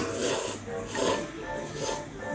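A person slurping ramen noodles: a few short, noisy slurps as the noodles are sucked in, one at the start and one near the end.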